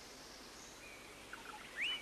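Bird calls over a faint, steady background hiss. A few short chirps come about halfway through, then a louder rising whistle near the end.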